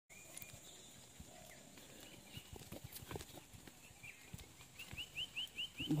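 A bird calling faintly: a few high notes, then a quick run of about six rising chirps near the end, over scattered faint taps.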